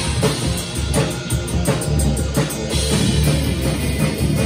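Acoustic drum kit played hard in a rock beat, with bass drum and cymbal hits, over guitar-driven rock music.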